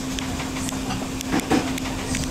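Background noise of a small, busy eatery: a steady low hum under a constant noise haze, with two short clatters about a second and a half in.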